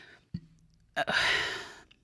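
A woman's breathy sigh, unvoiced, lasting about a second from about a second in, after a short mouth click.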